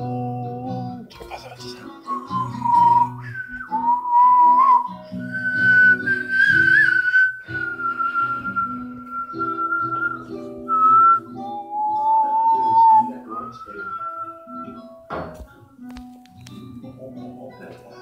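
A person whistling a slow melody of long held notes that slide from one pitch to the next, over a steady low musical backing of sustained notes. There is a single sharp knock near the end.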